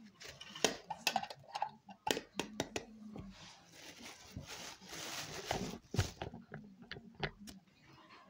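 Thin plastic carrier bag rustling and crinkling as handfuls of pumpkin pulp are dropped into it, with a run of sharp crackles and taps and a denser stretch of crinkling near the middle.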